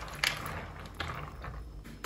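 Wooden spoon stirring dried apricots in a plastic colander: dry rustling and scraping, with sharp clicks about a quarter second in and again about a second in.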